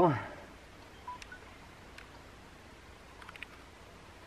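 DJI Mavic Mini drone being powered on by hand. A short, faint two-note beep sounds about a second in, and a few light clicks follow, from the button presses and the drone stirring into life.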